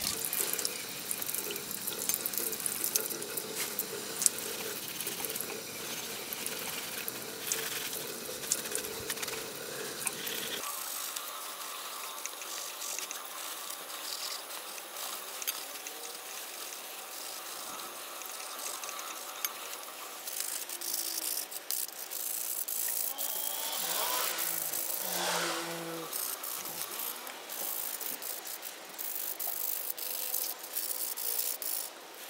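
Running water splashing off a chrome-plated steel motorcycle carrier and onto concrete as the scrubbed carrier is rinsed clean of detergent and rust, the flow getting thinner about ten seconds in. Light clinks and rattles of the metal carrier being turned over in gloved hands.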